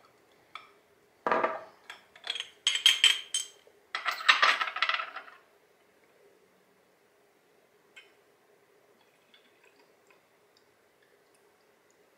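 Glass and metal clinking and tapping as a small stainless steel funnel, an amber glass bottle and a glass graduated cylinder are handled: a quick run of clicks with short ringing over a few seconds, near the start.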